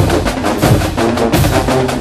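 Marching band drumline playing a fast cadence: a dense run of rapid drum strokes with low drum hits underneath.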